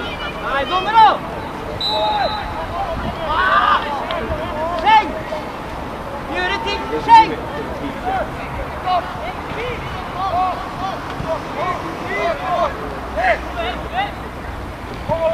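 Scattered shouts and calls from several voices across a football pitch during play, short and overlapping, with the loudest shouts about a second in and about seven seconds in.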